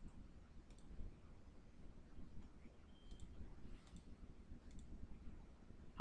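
Near silence with a few faint, sparse clicks from a computer keyboard and mouse.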